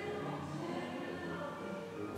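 Quiet background music of held, sustained notes.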